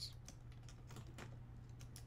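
Faint, scattered light clicks over a low steady electrical hum, in a pause between speech.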